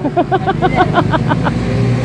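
A man laughing in a quick run of short bursts, then a steady low engine hum takes over.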